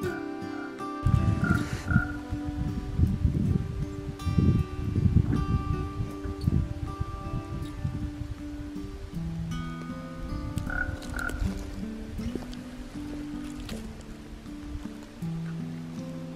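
Common raven calling: two quick croaks about a second and a half in, and two more about two-thirds of the way through. Acoustic guitar music plays underneath.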